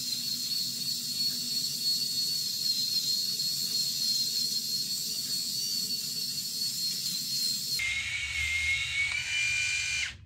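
Remington Balder Pro five-head rotary head shaver running over a freshly shaved scalp, a steady high-pitched motor whine. About two seconds before it stops, the whine drops to a lower pitch and creeps slowly upward, then cuts off.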